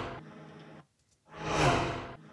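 Sound effect of a small Honda car driving past, processed with a Doppler pitch-shift plugin. The tail of one pass-by fades away, and after a short silence a second pass swells up and fades out again, its low engine note bending downward as it goes by.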